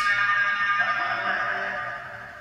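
Spirit box output through a small speaker: a sudden, distorted, music-like burst with several held tones that slowly fades over about two seconds. The session host captions it as a voice saying "that was Rick".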